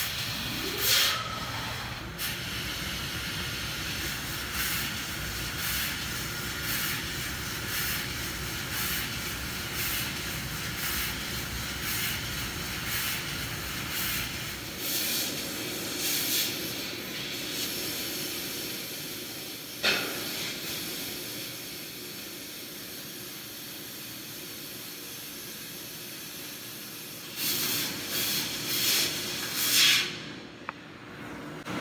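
Fiber laser cutting machine cutting a living-hinge slot pattern in stainless steel sheet: a steady hiss of assist gas broken by short loud bursts about once a second as the head pierces and cuts each slot. A short rising whine at the very start, a sharp click about two-thirds of the way through, and a calmer, steadier stretch before the bursts return near the end.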